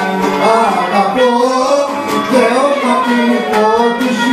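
Live Cretan music: a Cretan lyra, a bowed three-string folk fiddle, plays a gliding melody, with singing and a plucked string accompaniment.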